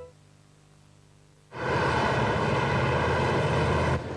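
A loud engine noise starts suddenly about a second and a half in, after a near-silent gap, and runs on steadily.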